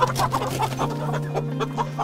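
Chickens clucking, a rapid run of short clucks from several birds.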